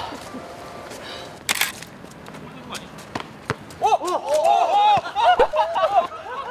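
Players shouting short, high calls to one another during a futsal game, several voices overlapping in the last two seconds. A brief sharp noise comes earlier, about a second and a half in.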